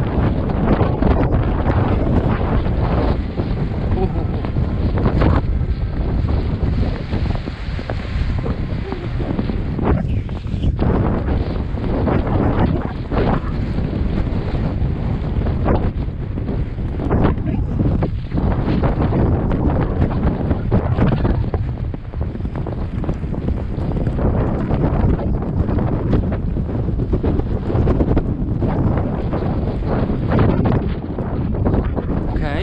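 Loud wind rushing and buffeting over the microphone of a camera carried on a horse moving fast on a riding track, the air noise swelling and dipping unevenly.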